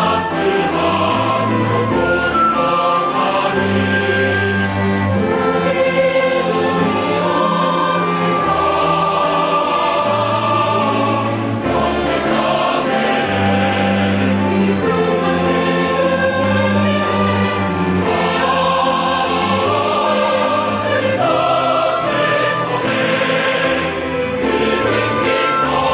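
Large mixed choir of men and women singing a hymn in Korean, accompanied by an orchestra.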